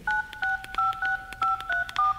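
Telephone touch-tone keypad beeps: a number being dialled, with about seven dual-tone beeps in quick succession, roughly three a second.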